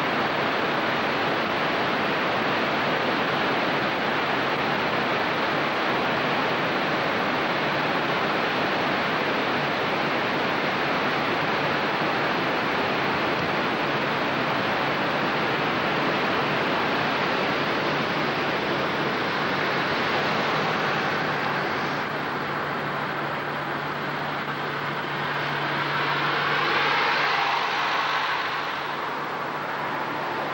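Steady rushing noise inside a moving car's cabin: road and engine noise, with a low engine tone showing through in the second half and a brief swell a few seconds before the end.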